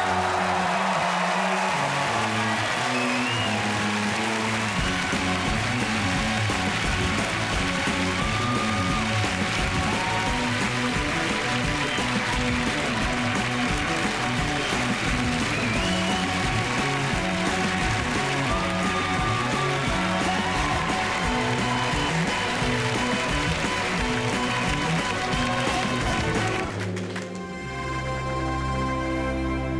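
End-credits theme music with a steady beat and a stepping bass line, over audience applause at the start. The music fades out near the end.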